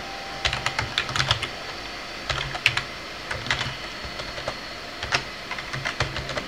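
Typing on a computer keyboard: short bursts of keystrokes separated by brief pauses.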